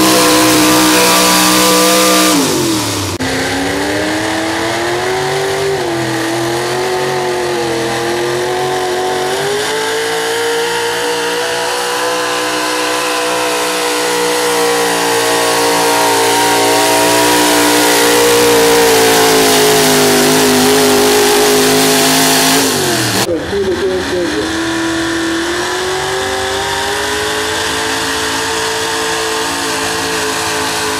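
Gas V8 pickup truck engines running at high revs under full load while pulling a sled, the pitch wavering up and down as they bog and recover. The engine note falls away suddenly about three seconds in and again past twenty seconds, each time followed by another engine climbing back to high revs.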